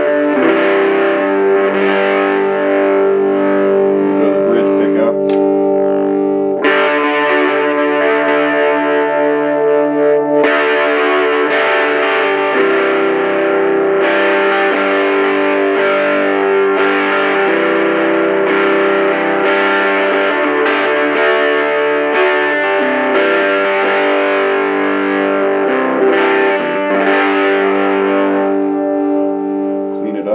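Electric guitar played through a tiny half-watt cigar-box amplifier with a 3-inch speaker, its gain turned up for a distorted tone. Sustained notes and chords ring out, changing every few seconds.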